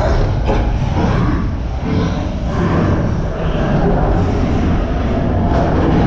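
Matterhorn Bobsleds coaster car running on its tubular steel track, a loud continuous rumble and rattle from the front seat of a ride that is very rough.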